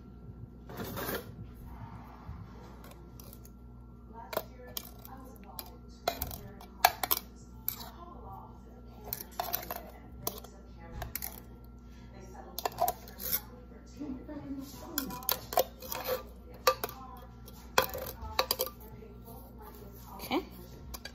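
Irregular clinks, taps and knocks of kitchen utensils and dishes being handled, coming in scattered clusters.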